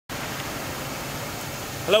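Steady, even hiss of outdoor background noise, with a man starting to speak at the very end.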